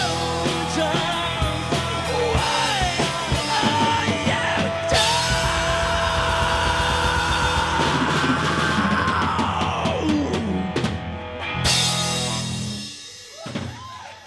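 Live rock band playing the closing bars of a song: electric guitar, drum kit and a male lead voice holding long sung notes, with cymbal crashes. A final crash comes about twelve seconds in and rings out as the song ends.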